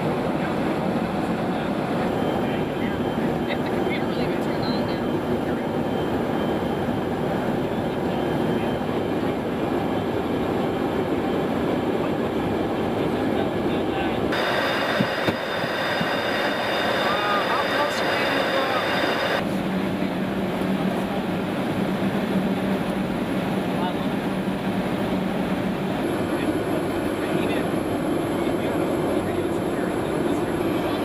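Steady cabin noise inside a Boeing E-3 Sentry in flight: engine and airflow rumble mixed with equipment hum. For about five seconds in the middle the noise turns brighter with thin high whines, then a low hum runs under it for a few seconds.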